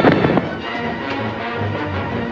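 A man's body slammed to the floor in a wrestling throw: a loud crash in the first half-second, made of two or three quick impacts. Orchestral score music plays under it.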